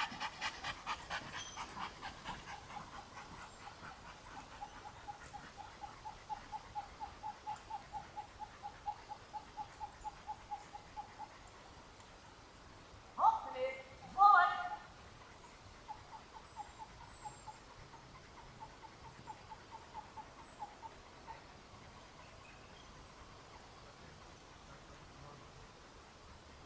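A dog whining in a long run of short, even whimpers, about three a second, which stops for a few seconds and starts again. Two brief, louder cries break in about halfway through.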